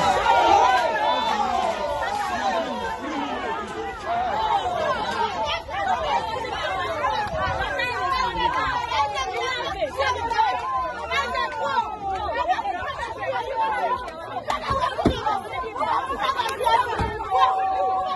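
A crowd of people shouting and crying out over one another in overlapping voices, with a couple of sharp knocks near the end.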